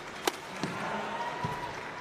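Badminton rally: a shuttlecock struck sharply by a racket about a quarter second in, followed by a few lighter knocks of play and footwork on the court.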